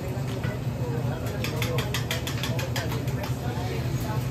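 Metal spatula clicking and scraping rapidly on a deli flat-top griddle while eggs and bacon cook, a quick run of about ten taps in the middle, over a steady low hum of kitchen machinery and faint voices.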